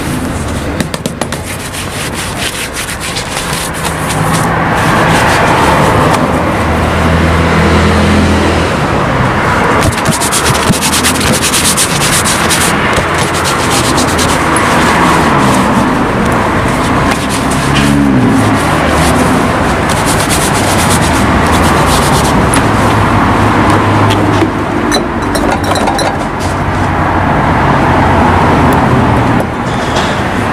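Cloth and hands rubbing over a polished black leather shoe, buffing it to a shine. Street traffic with running engines sounds loudly underneath.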